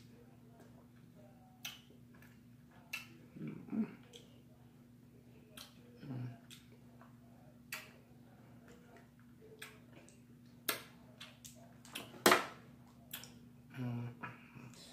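Snow crab leg shells cracking and snapping by hand, heard as scattered sharp clicks a second or two apart, with the loudest crack near the end, between soft sounds of eating.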